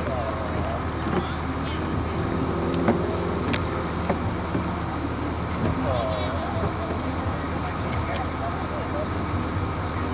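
A parked party bus's engine idling with a steady low hum, with people's voices faintly in the background.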